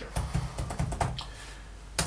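Typing on a computer keyboard: a quick run of about a dozen keystrokes, thinning out near the end.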